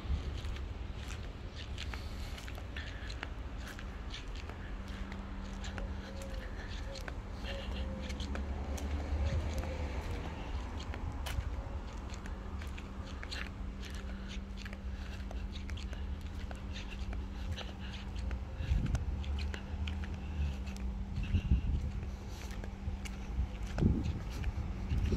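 A steady low hum with a faint constant tone, under scattered small clicks and rustles of handling noise from a camera carried by hand.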